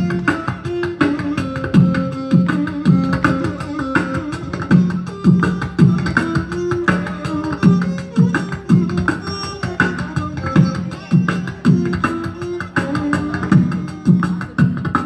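Beatboxing through a microphone and PA: vocal bass and drum sounds keeping a steady beat of about two strokes a second, with a violin playing a melody over it.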